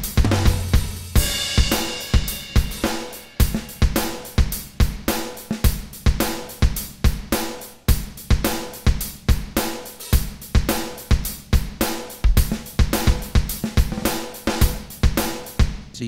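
Rock Drum Machine 2 iPad app playing a programmed rock drum-kit pattern at 107 BPM, steady evenly spaced hits, with a cymbal crash about a second in.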